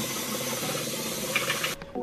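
Water running from a bathroom sink tap and splashing as someone washes their face at the basin, a steady rushing hiss that cuts off suddenly near the end.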